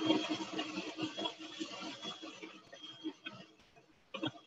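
Electric mixer running on high speed, heard faintly and fading away over the few seconds.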